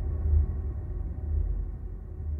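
A low, steady rumble with little above it.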